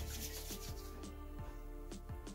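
Palms rubbing together, working a dab of cocoa butter cream between the hands, under quiet background music.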